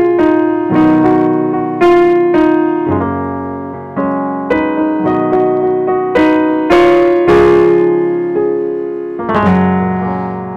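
Electronic keyboard on a piano voice playing a slow run of block chords in F-sharp major. A new chord is struck about once or twice a second, and each rings and fades before the next.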